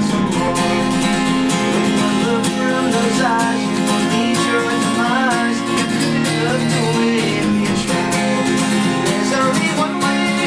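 Steel-string acoustic guitar strummed steadily in an instrumental passage between sung verses of a live acoustic song.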